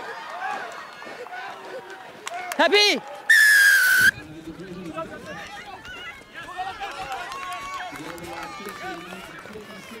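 A referee's whistle blown once about three seconds in: a single steady blast of under a second that drops slightly in pitch at the end. Shouts and chatter of players and spectators run underneath, with one short rising call just before the whistle.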